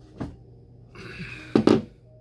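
Handling of a cardboard wine shipping box as a bottle is taken out: a short click, then a scraping rustle about a second in that ends in a loud knock.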